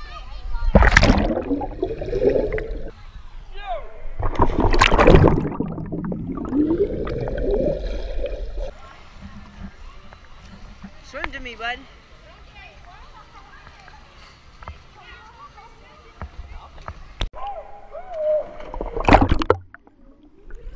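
Children jumping and splashing into a swimming pool: a loud splash about a second in and another around five seconds, with water sloshing around a camera at the surface. Another loud rush of water comes near the end as the camera goes under.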